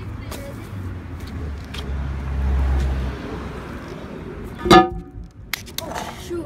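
A heavy cast-iron manhole cover set back into its frame: a low rumble of the cover being moved, then, just before the end, one loud metallic clang with a brief ringing tone.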